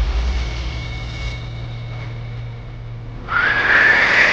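Cinematic dramatic sound effect: a deep boom sweeping down in pitch, a low hum, then a loud rising whoosh swelling near the end.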